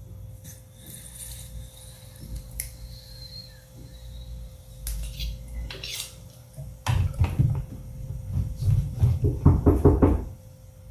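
A few faint clicks and clinks as a glass bong is lit and smoked. About seven seconds in, a louder run of irregular low knocks begins, knocking at a bedroom door.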